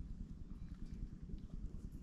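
New engine oil poured from a measuring jug into a plastic funnel in a small generator's oil filler, a faint trickle under a low, uneven rumble.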